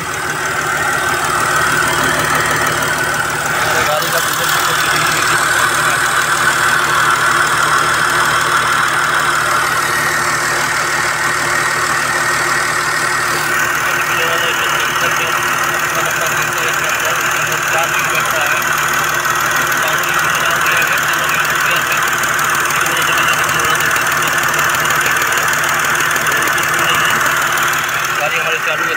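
Mercedes GL 350 CDI's 3.0-litre V6 turbo-diesel running steadily at idle, just restarted after a fuel-filter change and air bleed.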